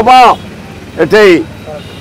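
A man speaking in two short bursts, near the start and about a second in, with steady background noise in the pauses between them.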